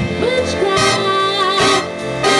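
Female vocalist singing long, sliding notes into a microphone over a school jazz big band playing behind her.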